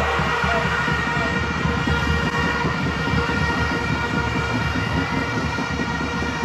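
Many fans' horns in the stands blowing together, one steady, unchanging multi-note blare of celebration over a rough low rumble.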